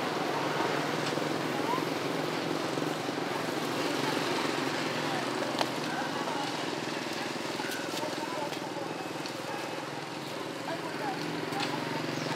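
Outdoor ambience: a steady low engine-like hum with indistinct voices in the background, and one sharp click near the middle.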